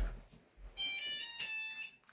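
Short electronic alert chime, a quick run of high beep tones lasting about a second, from a Shark ION RV754 robot vacuum signalling an error: its front bumper is stuck.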